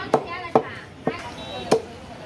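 Butcher's cleaver chopping meat and bone on a wooden block: four sharp strikes, roughly one every half second.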